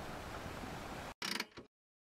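Steady noise that cuts off suddenly about a second in, followed by a short, bright clicking rattle. It is a sound effect for an animated logo.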